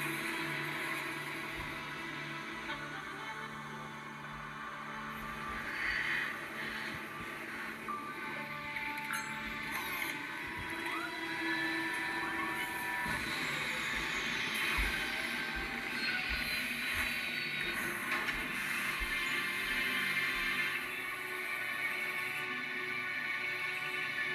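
Background music with long held tones, played through a television's speakers and picked up off the set.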